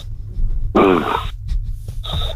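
A person moaning "mmh" once over a telephone line, the pitch falling, with a steady low hum underneath.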